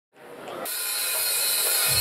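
Live rock concert sound fading in: a steady, noisy hall ambience of the crowd and stage, with the band's bass and drums starting to come in near the end.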